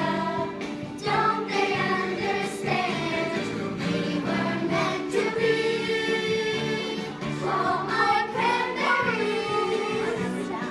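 A children's song: a group of voices singing over steady instrumental accompaniment, running throughout.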